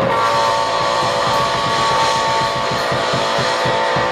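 Punk rock band playing live: electric guitars holding sustained distorted notes over a quick, steady drumbeat, with no vocals.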